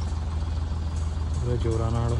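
Tractor's diesel engine running at a steady speed, powering the spray rig that feeds the spray lances.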